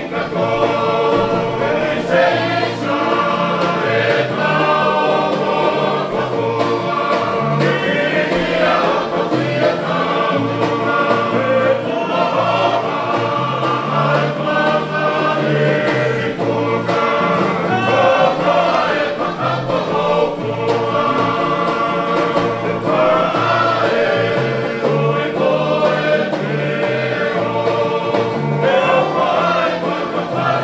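Tongan string band music: a chorus of men singing together over strummed acoustic guitars and ukuleles, with a steady bass pulse underneath.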